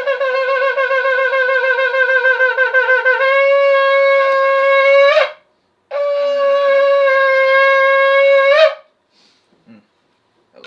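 Shofar blown in two long blasts. The first wavers rapidly in pitch for about three seconds, then holds a steady note. After a short breath, a second steady blast follows; each blast ends with a quick upward break in pitch.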